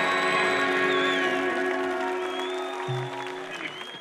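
A live rock band's final chord held and ringing out over audience applause, gradually fading out.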